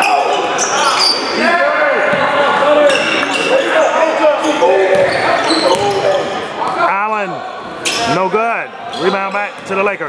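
Basketball being dribbled on a gym's hardwood court, with short knocks scattered through, under overlapping voices of players and spectators calling out, several loud rising-and-falling calls coming near the end.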